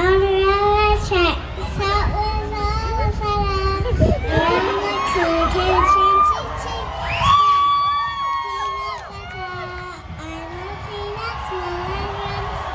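A little girl's voice over a concert PA, calling out and singing into a microphone, with the crowd cheering around her. The crowd is loudest in the first half and quieter by the end.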